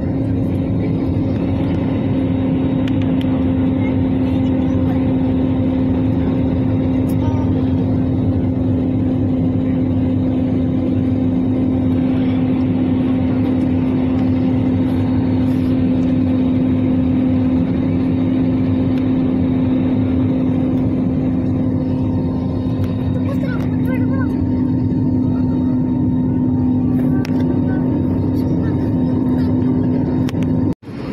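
Jet airliner cabin noise during the climb after takeoff: a steady engine drone with a constant hum, heard from inside the cabin over the wing.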